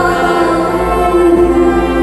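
Mixed choir singing with an orchestral ensemble, holding long sustained notes that shift to a new chord about midway.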